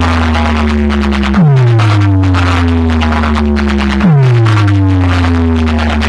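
Electronic dance music blasting from a large truck-mounted horn-speaker sound system: a deep bass tone sweeps downward and repeats about every two and a half seconds, striking again about a second and a half in and about four seconds in.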